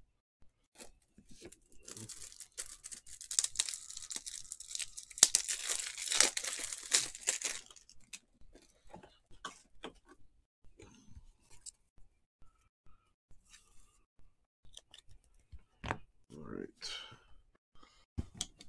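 Clear plastic card packaging crinkling and tearing for several seconds, followed by scattered light clicks and handling noises as cards are moved about.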